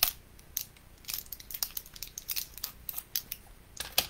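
A run of light, irregular clicks and taps, a dozen or so spread through the few seconds.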